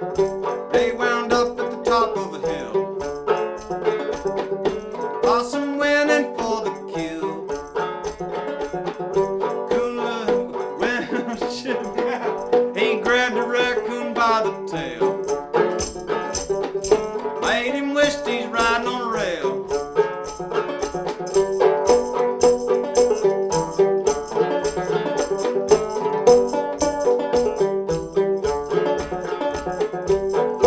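Solo fretless 1840s William E. Boucher minstrel banjo, tuned to about eAEG♯B, played as an instrumental break with a steady, even picking rhythm.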